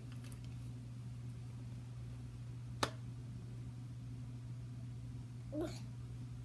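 A clear vinyl zippered pouch being handled, giving one sharp click about three seconds in and a short squeak near the end, over a steady low hum.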